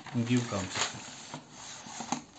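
Notebook paper page being turned over and pressed flat: an irregular dry rustling and rubbing of paper with a few light crackles.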